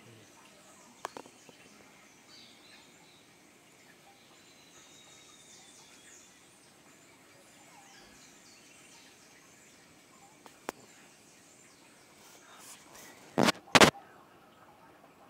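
Faint, scattered high bird chirps over quiet outdoor background noise, with two loud bumps close together near the end.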